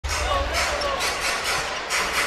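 Arena crowd hum with a basketball being dribbled on the hardwood court.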